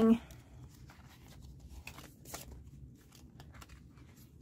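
Faint rustling and soft ticks of plastic binder pages and cash envelopes being turned and handled.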